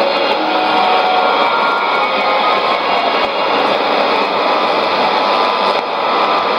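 Shortwave AM broadcast on 7375 kHz from a Sony ICF-2001D receiver: faint music buried in heavy static and hiss.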